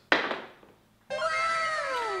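A sudden thunk near the start, then, about a second in, an added comic sound effect of several long, falling, overlapping tones.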